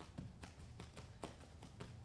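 Bare feet landing lightly on foam training mats in quick, even two-footed hops, a faint soft tap about four times a second.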